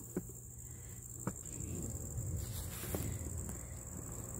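A steady, high-pitched chorus of insects chirring. Over it come two sharp clicks in the first second and a low rustling, rumbling handling noise through the middle.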